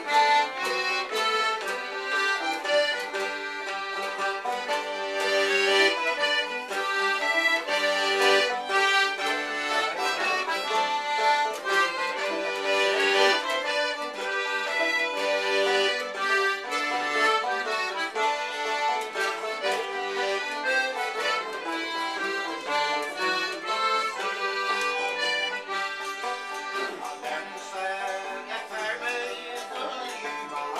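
Traditional folk instrumental: a melody on accordion with long held notes, over strummed acoustic guitar and mandolin.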